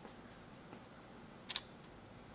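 Metal kitchen tongs giving a single sharp click about one and a half seconds in, over quiet room noise.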